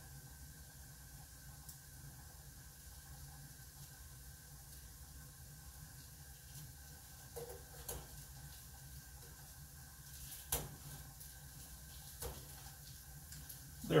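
Faint steady sizzling of oil, garlic and spices in a hot frying pan, with a few light clicks and taps, one sharper click about two-thirds of the way through.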